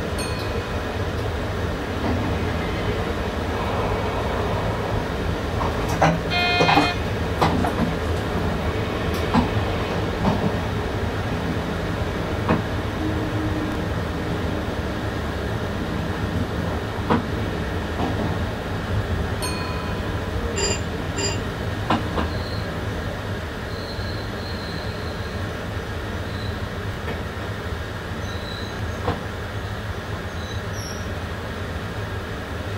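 Passenger train heard from inside the driver's cab, running along the track with a steady low rumble and scattered clicks and knocks from the rails and points as it nears a station. A short, higher-pitched sound comes about six to seven seconds in.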